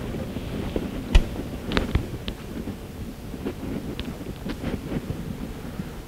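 Footsteps and a few sharp knocks and clicks over low room noise as people walk through a doorway, the loudest knock about a second in.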